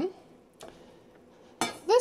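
Metal air fryer accessories, a cake pan and wire racks, clinking as they are handled on the stovetop: a faint tap about half a second in, then a brief, louder clatter near the end.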